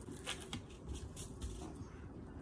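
A few faint, light taps and rustles of handling as red paint is dabbed from a plastic bottle onto paper on a high-chair tray.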